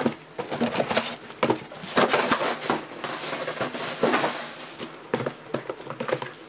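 Small cardboard boxes of trading cards being slid and shuffled by hand across a table. There are irregular taps and knocks as they bump together, and a scraping stretch about three seconds in.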